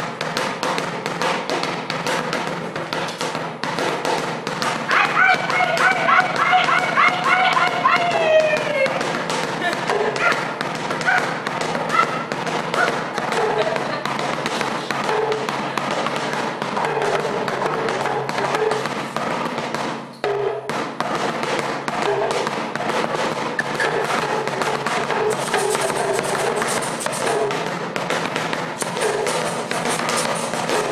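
Improvised percussion jam: a plastic bucket drum struck with sticks and an atumpan talking drum played with a stick, in a dense, fast rhythm. A wordless voice joins in, with a high wavering held call from about five to nine seconds in and shorter vocal sounds after it. Everything drops out briefly around twenty seconds in.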